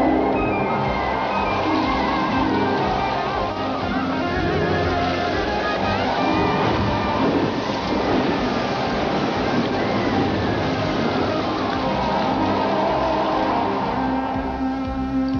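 Music over the rush of water pouring from the tank set's tilting dump tanks, a special-effects 'giant wave' crashing into the water tank.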